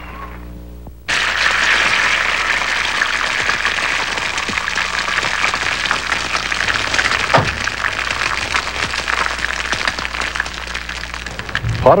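Two eggs sizzling as they fry in a cast-iron skillet: a steady crackling hiss that starts suddenly about a second in.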